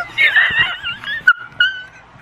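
A young woman's high-pitched squealing and screaming with excitement, in several wavering bursts, the last two short squeals coming near the end.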